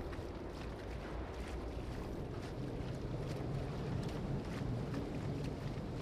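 Steady low-level ferry ambience: a low engine drone under a wash of wind and water noise.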